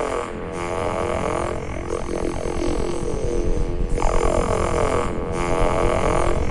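Ski-Doo snowmobile engine droning under throttle as the sled rides, with a fresh rise in revs about four seconds in.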